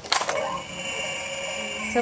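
LeapFrog Tumble & Learn Color Mixer toy truck: a sharp plastic click as its side lever is worked, then the toy's electronic mixing sound effect from its small speaker, a steady high electronic tone that is meant to be like grinding.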